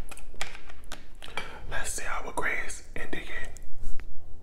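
A man whispering close to the microphone, broken by a few light clicks and taps as a plastic food tray and fork are handled.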